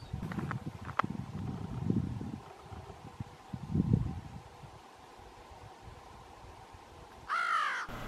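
A crow gives one falling caw near the end. Before it come low muffled rumbles and a sharp click about a second in.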